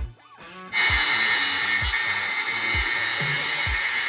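Makita power tool running with a steady, high whine, starting about a second in, used to clear the old antenna hole in the van's metal roof. Background music with a steady kick-drum beat plays under it.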